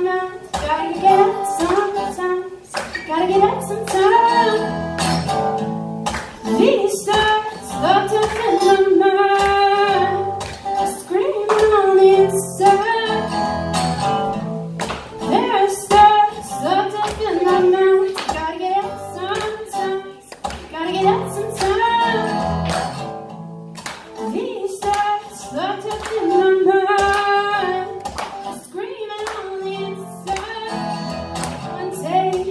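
Acoustic guitar strummed in a steady rhythm with a singer's voice carrying a melody over it at the microphone, a live song performance.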